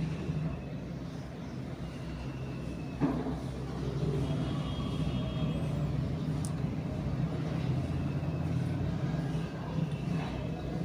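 A steady low motor hum, with a soft knock about three seconds in.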